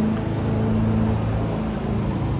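A steady low mechanical hum holding one pitch, like nearby machinery or an engine running.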